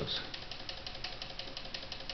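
The electromechanical relays of a homebuilt relay computer clicking in a rapid, even run, several clicks a second. It is the machine stepping through a one-instruction loop that adds one to a counter on each clock.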